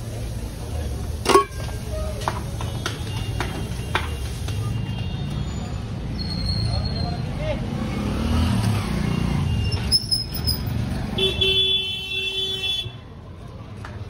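Busy street traffic rumbling steadily, with a vehicle horn sounding one steady note for about a second and a half near the end. A single sharp clink comes about a second in.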